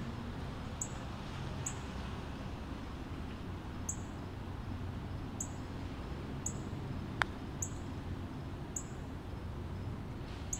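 A putter striking a golf ball once: a single sharp click about seven seconds in. Behind it a bird gives short high chirps every second or so over a steady outdoor background.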